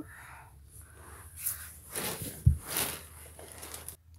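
Handling noise as toys are moved about by hand on a carpet: rustling and shuffling, with one sharp low thump a little past halfway.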